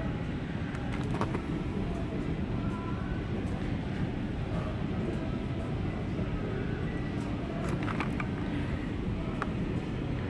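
Steady low rumble of indoor store background noise, with a couple of faint clicks from handling.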